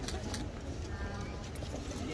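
Two sharp clicks of high-heeled shoes on pavement near the start, the last steps of a walk, over a murmur of crowd voices.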